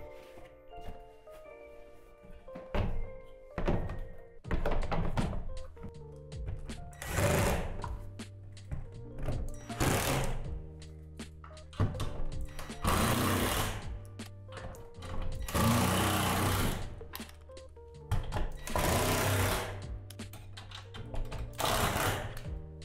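Cordless drill driving screws into plastic roof panels, in about seven short runs of a second or so each, the longest in the middle, over background music.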